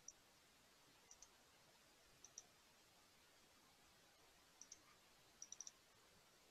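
Near silence broken by faint computer mouse clicks, mostly in quick pairs, with a short run of about four clicks near the end.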